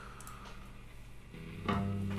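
Quiet low bass notes from the song's recording: a note fading away, then a new low note starting near the end, part of a bass line played in octaves.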